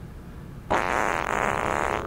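A sudden, loud, raspy fart sound effect that starts about two-thirds of a second in and lasts just over a second.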